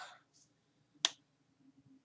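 The tail of a man's word, then one short, sharp click about a second in.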